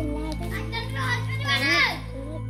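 Children's voices calling out over steady background music, with one high child's cry that rises and falls near the end.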